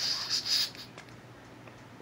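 Green gas hissing from an upturned can into a gas airsoft pistol's magazine as it is filled: a short hiss that stops under a second in.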